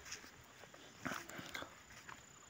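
Faint outdoor ambience with a short, distant animal call about a second in.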